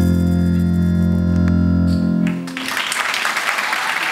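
Live stage band music: a loud sustained low chord with heavy bass, held until about two seconds in, then giving way to a noisy hiss-like wash.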